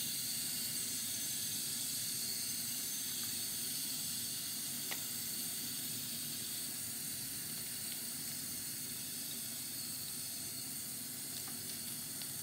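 Bathroom sink tap running, its stream pouring onto the dry soil of a potted plant to water it: a steady hiss, with one small click about five seconds in.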